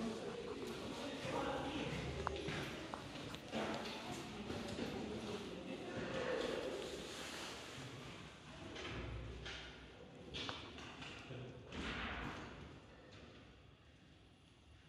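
Indistinct voices of people close by, with a few dull thumps and knocks; it grows quieter toward the end.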